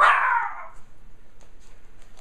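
A Japanese Chin puppy giving a single short, high yelp that fades away within about half a second.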